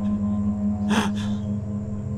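A sustained low musical drone with a sharp gasp for breath about a second in.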